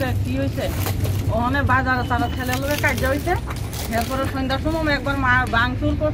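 A woman speaking at length, with a steady low rumble underneath.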